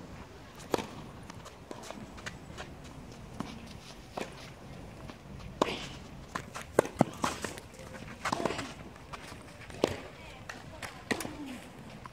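Tennis rally: a serve struck about a second in, then more sharp pops of ball on racket strings, with softer bounces and quick footsteps on the clay. The loudest pair of hits comes about seven seconds in.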